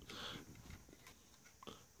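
Near silence, broken by faint handling noises: a brief click at the start, a soft low rustle in the first half second and small blips near the end.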